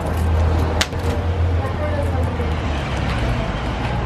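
Wood fire in a metal fire pit crackling, with a sharp pop a little under a second in, over a steady low rumble and faint distant voices.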